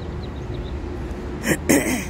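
Steady low outdoor rumble, with a short burst of a woman's voice near the end.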